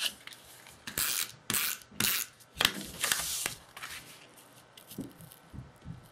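Cardstock being handled and slid into place as a stamped card front is matted onto black cardstock: about half a dozen short, quiet rasping strokes of paper, the longest about three seconds in.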